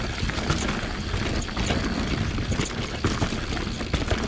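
Mountain bike rolling fast down a dirt and rock singletrack: tyres on the trail and a steady run of small rattles and knocks from the bike.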